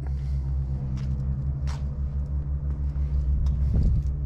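Steady low rumble with a constant hum: the Deutz-Fahr 8280 tractor's six-cylinder diesel engine idling.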